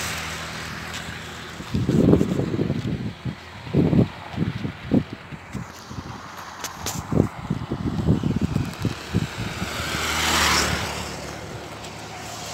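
Wind gusting on the phone microphone in irregular low rumbles, then a vehicle passing on the highway close by, swelling to a rush and fading away about ten seconds in.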